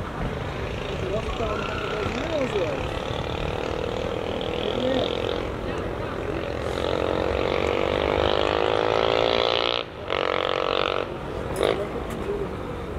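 A motor vehicle engine speeds up, its pitch rising steadily through the second half. It breaks off briefly near the end, like a gear change, then carries on. Distant voices from around the pitch are heard throughout.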